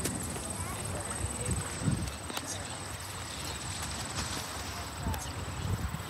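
Outdoor background: faint distant voices over a steady hiss of wind and air, with a few soft clicks and a thin, steady high-pitched tone throughout.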